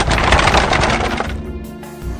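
Rapid clattering rattle of many sharp cracks, a sound effect for the devil's cart approaching; it dies away over the second half.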